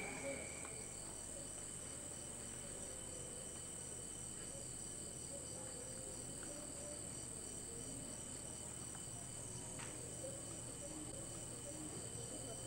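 Faint, steady chirping of insects such as crickets: an even high shrill throughout, with a rhythmic pulsing chirp just below it and a low hum underneath.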